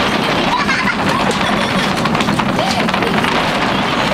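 People's voices, not clear enough to make out words, over a loud, steady background noise.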